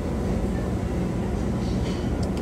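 Steady low rumble and hum of restaurant room noise, with no distinct events standing out.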